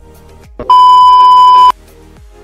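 A single loud, steady electronic beep lasting about a second, starting about a third of the way in and cutting off sharply, over background music with a steady beat.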